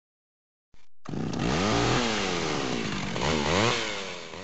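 A small engine, chainsaw-like, revving up and falling back several times. It starts about a second in, just after a short click.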